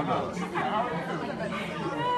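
Several people talking at once in lively, overlapping chatter close to the microphone.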